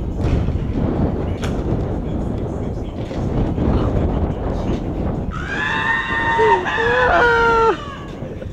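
Steady low rumbling noise with a sharp click about a second and a half in, then a person's drawn-out high-pitched shout lasting about two seconds, its pitch wavering and bending before it cuts off near the end.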